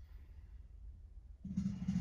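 Low, quiet room rumble, then about one and a half seconds in, music starts abruptly with a sustained low pitched note.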